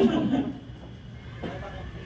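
Laughter trailing off in the first half-second, then low room noise with a single faint tap near the middle.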